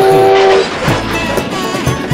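Cartoon locomotive whistle sounding a chord of several steady tones for about half a second at the start, followed by train noise under background music.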